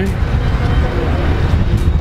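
Street ambience with a loud, steady low rumble, and faint voices in the background around the first second.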